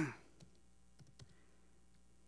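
A few faint, separate laptop key clicks: keys pressed to page through GDB's disassembly output.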